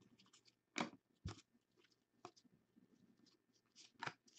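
Faint, scattered flicks and clicks of trading cards being sorted through by hand, with two louder snaps about a second in.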